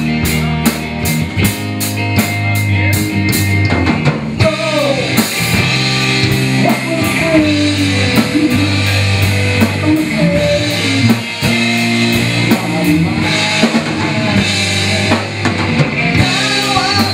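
Live rock band playing an instrumental stretch on electric guitar, electric bass and drum kit. Fast cymbal strokes fill the first few seconds, then a lead line with pitch bends runs over the bass and drums.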